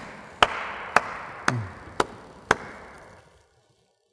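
One person's slow hand claps, five of them about half a second apart, each echoing in a large, bare hall.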